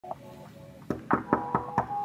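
Knuckles knocking on a wooden door, about five quick knocks starting a little under a second in, with music playing underneath.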